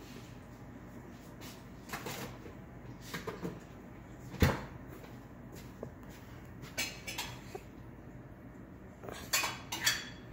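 A few scattered light clinks and knocks over a low steady hum, with one louder thump near the middle and a small cluster of clinks near the end.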